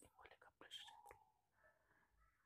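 Near silence, with a faint whispered muttering in the first second.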